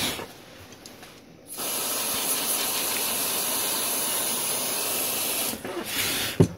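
Aerosol can of freeze spray hissing: a short spray at the start, then one steady spray of about four seconds from about a second and a half in. The freeze spray is used on a liquid-damaged iPad mini 3 logic board to find the shorted chip, which shows itself by thawing first.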